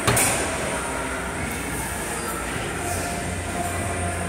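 Steady background noise of a large gym hall with a low hum running under it, and a single sharp knock just after the start.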